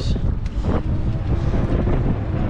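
Wind buffeting the camera microphone: a steady, loud low rumble.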